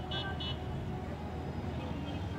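Steady low background hum with a short run of quick, high-pitched beeps in the first half-second.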